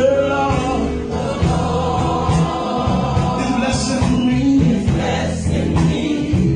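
A man singing a gospel song into a microphone, amplified through a PA, with other voices and instrumental accompaniment underneath.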